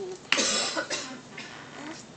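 A person coughing: one loud, harsh cough about a third of a second in, trailing off over the next half second with a weaker catch after it.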